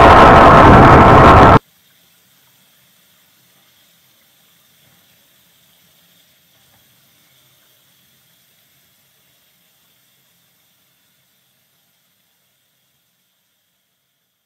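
A loud, even rushing noise that cuts off suddenly about a second and a half in, followed by near silence.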